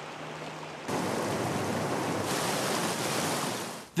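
Rushing river water, the Eagle River running high and fast with spring snowmelt over rocks. The rush is fainter at first, jumps louder about a second in, and fades out just before the end.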